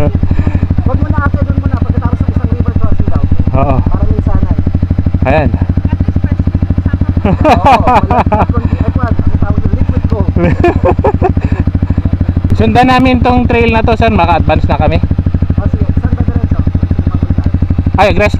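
Dirt bike engine idling steadily close by, an even low-pitched run of firing pulses that never changes speed, with people talking and laughing over it.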